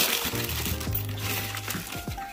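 Tissue paper in a shoebox rustling and crinkling as it is handled, over background music.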